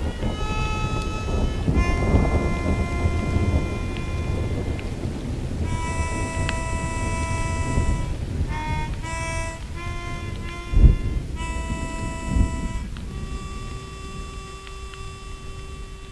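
Thunderstorm: rain and rumbling thunder, with two louder thunderclaps in the second half. Over it a harmonica plays a slow melody of long held notes.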